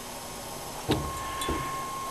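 Pottery bowls being handled: two light knocks about half a second apart, about a second in, as one bowl is set down and the next picked up, over a faint steady hum.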